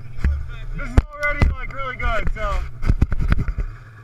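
Snowmobile engine idling with a steady low hum, under people talking and a series of sharp knocks and bumps close to the microphone; the knocks and voices stop shortly before the end, leaving the idle.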